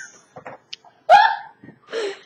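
A woman laughing: one short, pitched burst of laughter about a second in, with fainter laughing breaths before it and a smaller burst near the end.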